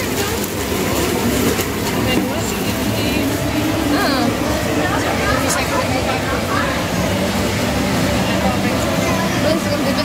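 Indistinct chatter of nearby voices over a steady low hum, the busy background of a mall food court.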